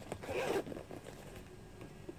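Zip of a black Aputure soft carrying case being pulled in one short run of about half a second near the start, followed by light handling of the bag.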